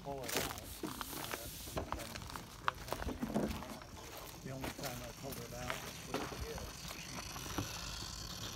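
Faint talk in the background with scattered clicks and rustling from handling, and a sharp click a little under three seconds in.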